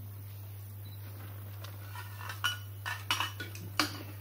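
Metal kettle and crockery clinking as they are handled on a wooden table: quiet at first, then five or six sharp, ringing clinks in quick succession in the second half.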